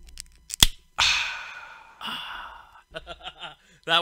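A sharp click just over half a second in, then a breathy sigh into a microphone about a second in that fades away over a second, and a second, softer sigh a second later.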